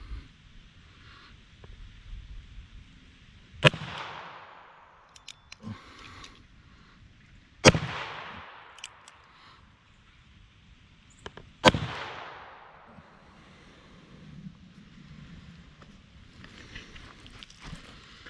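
Three shots from an H&R 732 .32 S&W Long revolver firing Lapua wadcutters, about four seconds apart, each followed by a short echo.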